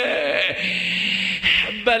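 A man's breathy, strained voice at the microphone between sung lines of a Shia Arabic elegy (rithā'), with little clear pitch, sounding like weeping or a drawn-out cry. A brief sharp sound comes just before the sung line resumes.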